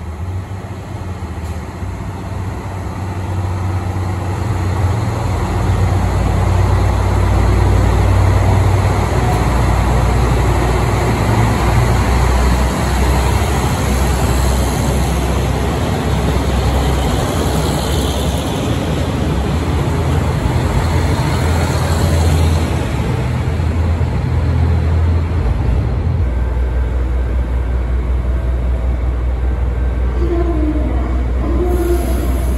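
KiHa 183 series diesel railcars pulling out, their diesel engines working under power. The low rumble builds over the first several seconds, then holds loud and steady as the cars pass and draw away.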